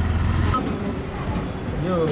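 A motorcycle engine runs steadily for about half a second and then stops suddenly. Fainter indoor noise with indistinct voices follows, and a voice starts near the end.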